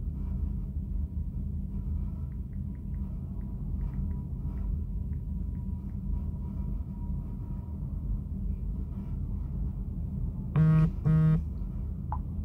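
Steady low hum. Near the end, a phone gives two short, loud buzzes as a WhatsApp message notification comes in.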